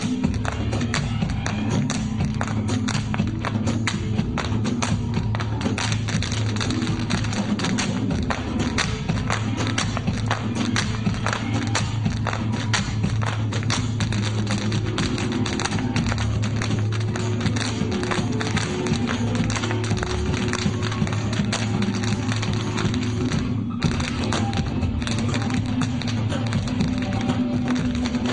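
Irish step dancers' hard shoes tapping out fast, dense rhythms on the stage floor over dance music, with a momentary break about 23 seconds in.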